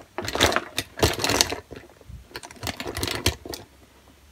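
Plastic makeup tubes, pencils and compacts clicking and rattling against each other as hands rummage through a shiny vinyl makeup bag. The clicks come thick for the first second and a half, then more sparsely.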